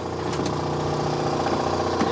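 Truck-bed air compressor running steadily, a constant, even-pitched mechanical hum.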